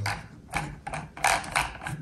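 Plastic control stick being screwed by hand onto the gimbal of a DJI FPV Remote Controller 2, making a series of short scraping clicks as it turns on its thread, about five in two seconds.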